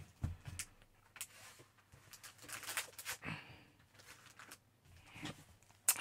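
Faint rustling and light taps of a plastic-wrapped paper pad and its packaging being handled, picked up and moved on a tabletop, in a few scattered short sounds.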